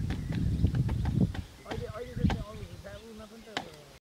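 Indistinct voices, with a low rumble in the first second and a half and several sharp knocks scattered through.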